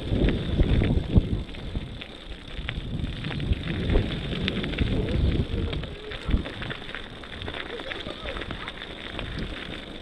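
Bicycle riding down a dirt-and-gravel trail: tyres crunching and crackling over the loose surface, with small rattles and clicks from the bike and wind rumbling on the microphone.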